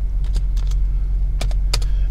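Computer keyboard keys clicking: about eight to ten separate, irregular keystrokes, over a steady low hum.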